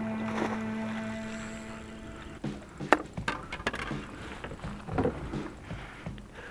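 Sharp knocks and clatters on a fishing boat's deck, several in quick succession, as a landing net is grabbed while a pike is being played. For the first couple of seconds a steady humming tone fades out beneath them.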